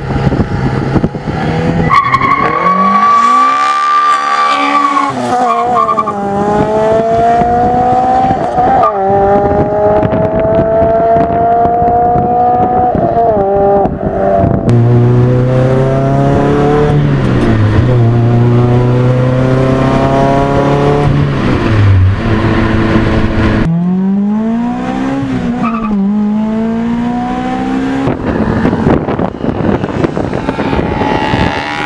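Toyota Corolla AE111's swapped-in 2ZZ-GE 1.8-litre naturally aspirated four-cylinder engine being driven hard. Its pitch climbs and then drops sharply at each gear change, several times over.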